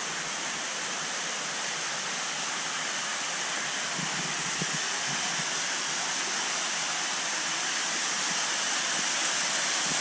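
Steady rush of water pouring and splashing into a large fish tank, growing slightly louder toward the end.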